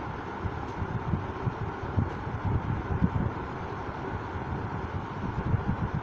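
Steady background noise with no speech: a low, unsteady rumble under a lighter hiss.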